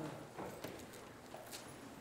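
A congregation getting to its feet in wooden pews and settling: quiet shuffling and rustling with scattered knocks of feet, pews and books.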